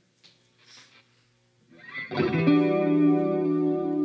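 After a near-silent pause, a sustained chord from an electric instrument played through chorus and distortion effects swells in a little before halfway and rings on, opening the song.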